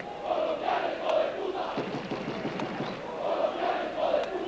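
Large football stadium crowd: a steady din of many voices shouting.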